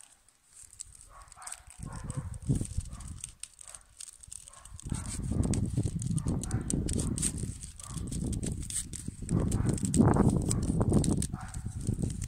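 Birch bark strips being worked by hand as they are threaded through the woven loops: small crisp clicks and crackles of the bark. About halfway through, a louder, irregular low rumble comes in swells and stays on top.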